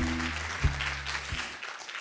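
Audience applause over the last plucked bass notes of intro music, which fade out about a second and a half in.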